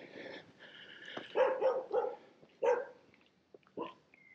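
A dog barking several times, in short separate barks that cluster a second and a half in and recur near the end.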